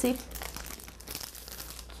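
A sheet of pre-cut double-sided foam adhesive tape rustling and crinkling faintly as it is lifted and flexed by hand.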